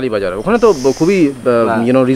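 Men talking in conversation, with a hiss lasting about half a second near the middle.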